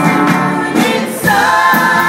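Female vocal trio singing together over a live band, a slow soul/R&B number. A new held note comes in, louder, just over a second in.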